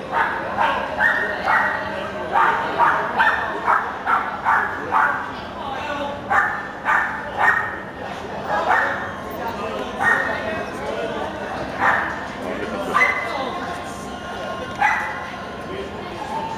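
A dog barking in high-pitched yaps, in a quick run of about two or three a second for the first five seconds, then in single yaps every second or two.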